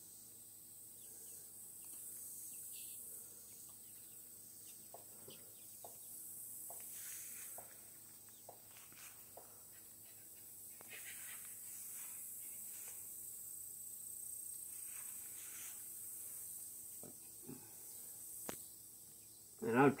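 Faint, scattered clicks and scrapes of a screwdriver and small plastic and metal parts being handled on a string trimmer's small two-stroke engine, over a steady high hiss.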